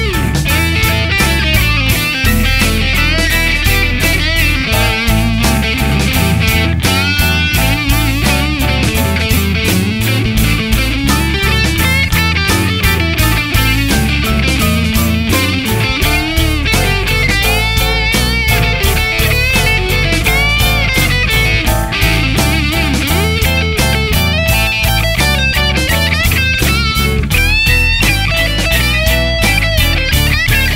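Rock music instrumental break: an electric lead guitar playing bending, wavering notes over bass and a steady drum beat.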